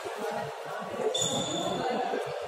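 A short high squeak of a court shoe on the badminton court mat, starting about a second in and lasting under a second, over voices echoing in a large hall.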